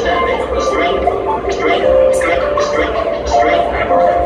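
Live electronic music from a looping and synth rig: a pulsing low beat under held synth notes, with short high ticks over the top.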